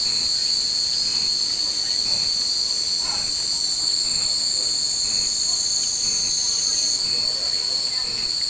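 A steady, loud, high-pitched drone of summer cicadas, with hanging metal wind chimes (fūrin) ringing faintly now and then.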